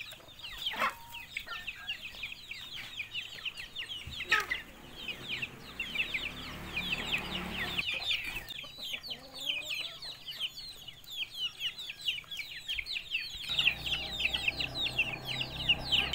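A flock of chickens, with young chicks cheeping nonstop in quick, high, falling peeps and hens clucking now and then; a single knock about four seconds in.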